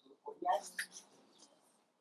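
Brief, faint speech: a few words about half a second in.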